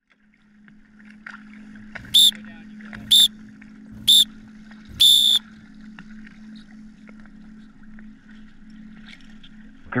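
A referee's whistle gives the start signal for a joust: three short, high-pitched blasts about a second apart, then one longer blast. A steady low hum runs underneath.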